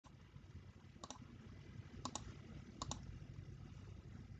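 Computer mouse clicking: three quick double clicks, about a second apart, over faint low room noise.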